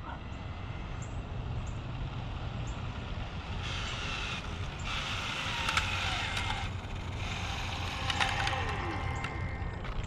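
Arrma Limitless V2 RC car with a Castle 1721 brushless motor driven back at low speed. Its motor whine and tyre noise come up in the middle, with the pitch sliding up and down, then the pitch falls as the car slows to a stop. A steady low rumble runs underneath.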